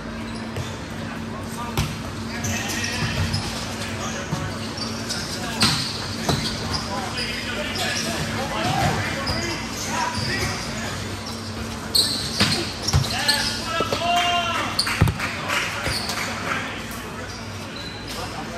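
A men's indoor volleyball rally: several sharp hits of the ball, the loudest about fifteen seconds in, with players calling and shouting to each other, all echoing in a large gym hall.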